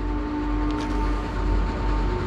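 Approaching train's horn sounding one long steady blast over a low rumble.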